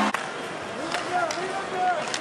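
Hockey arena sound during play: a crowd murmuring, with a few sharp clicks of sticks and puck on the ice. Louder cheering cuts off abruptly at the very start.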